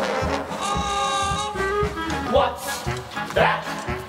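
Pit orchestra playing a brassy instrumental dance break of a show tune, trombones and trumpets to the fore. A held chord gives way to punchy rhythmic hits, with two short rising swoops in the second half.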